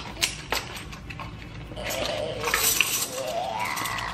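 A small cardboard box of shiny pink planner binding discs being opened, with a few sharp clicks, then the discs clinking and rattling together as they come out of the box.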